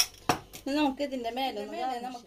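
A sharp metal clink right at the start, then a lighter knock a moment later, of a kitchen utensil against a cooking pot. A woman then talks through the rest.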